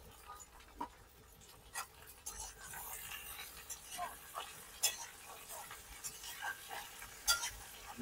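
Cut potatoes being stirred into hot oil in a steel kadhai with a long steel spatula: scattered light clicks and scrapes of metal on metal over a faint sizzle.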